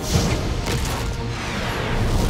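Cartoon sound effect of a volcano erupting: a deep rumble that starts suddenly, with background music over it.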